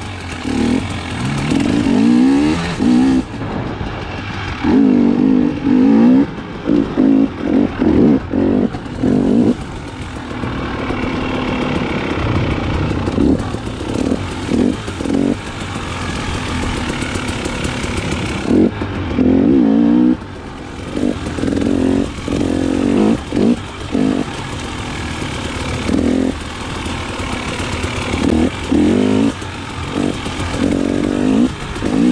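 KTM 300 XC-W TPI two-stroke single-cylinder dirt bike engine being ridden on a trail, its revs rising and falling again and again in short bursts as the throttle is opened and rolled off.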